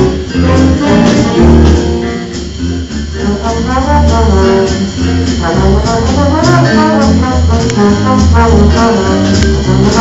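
Jazz big band playing, brass and saxophones together over bass and drums.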